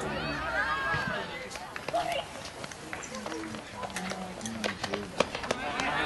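Men's voices shouting and calling across an outdoor football pitch, unclear and at a distance, with a few sharp knocks mixed in, the loudest just after five seconds.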